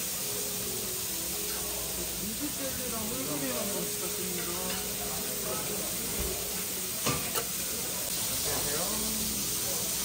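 Meat sizzling on a restaurant flat-top griddle, a steady hiss, with a sharp click about seven seconds in.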